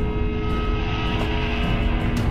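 Dramatic film score: held orchestral chords over a steady low drum rumble.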